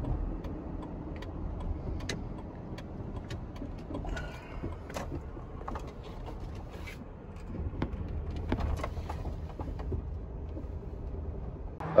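Road and engine noise inside a moving car's cabin: a steady low rumble, with scattered light clicks and rattles.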